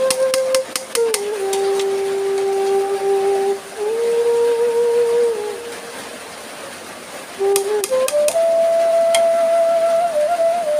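Background music: a slow melody of long held notes on a flute-like instrument. A metal spatula clicks and scrapes against an aluminium pressure cooker while stirring rice, in a quick flurry at the start and again near the end.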